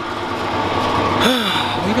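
A breathy exhale about a second in, then short vocal sounds, over a steady background hum.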